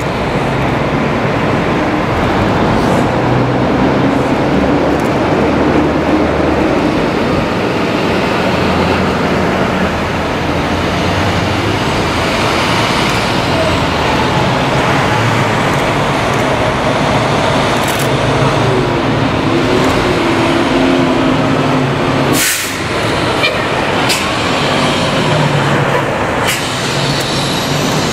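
Fire engines and fire department trucks driving slowly past in a line, a steady run of engine and tyre noise. A few short, sharp air-brake hisses come in the second half, the loudest as the fire engine passes.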